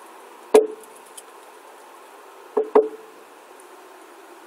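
Drum struck once, then twice in quick succession about two seconds later, each beat ringing briefly, over a faint steady hiss.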